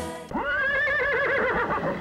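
A horse whinnying: one long neigh that begins just after the start, quavers rapidly in pitch through the middle and trails off downward near the end.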